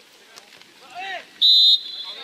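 A referee's whistle blown once in a short, loud blast about one and a half seconds in, stopping play. It comes just after a man's shout, with more shouting after it.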